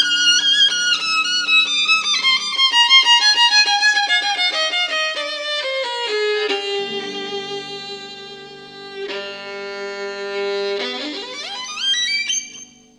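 Solo violin with piano underneath playing a fast run of notes that falls steadily in pitch, then holding one long low note, and climbing in a quick rising run near the end.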